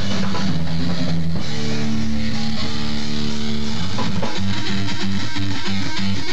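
Live band playing loud electric guitar with a drum kit. The band holds a sustained chord for a couple of seconds, then goes back into choppy, rhythmic riffing.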